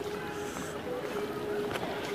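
Street crowd ambience: background chatter of many people walking about, heard as a steady din with some wind noise on the microphone.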